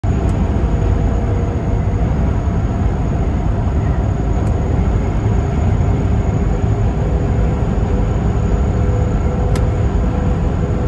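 Steady low rumble of road and engine noise inside a semi-truck's cab cruising at highway speed.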